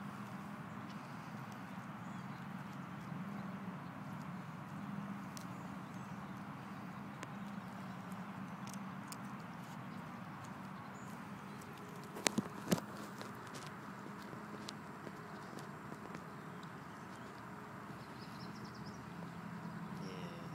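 Alaskan malamute chewing on a rabbit carcass, with small scattered crunches and three sharp cracks close together about twelve seconds in, over a steady low background hum.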